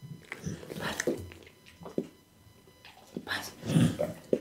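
A pit bull close to the microphone, sniffing and mouthing at an open hand held out to it, in irregular short bursts. The loudest burst comes near the end as its head goes down to the palm.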